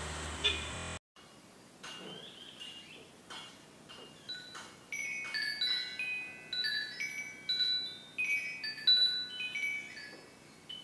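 Metal-tube wind chime ringing in a ceiling fan's draft: a few scattered strikes at first, then from about halfway a denser run of overlapping clear tones.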